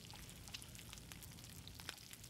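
Brioche slices frying in butter in a pan: a faint sizzle with scattered small crackles.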